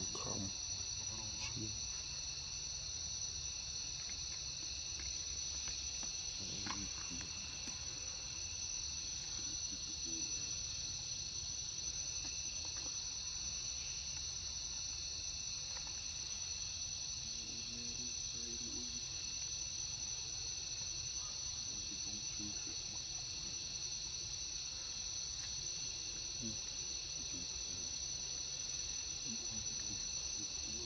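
Steady chorus of insects in the forest, a continuous high-pitched buzz in two pitch bands that does not change, over a low background rumble.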